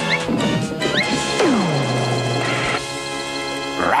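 Cartoon background music with slapstick sound effects, including a crash and a long falling pitch glide about one and a half seconds in that settles into a held low tone.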